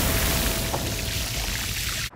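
Burger patty sizzling loudly as a metal spatula presses it onto a hot griddle, the hiss fading gradually over two seconds.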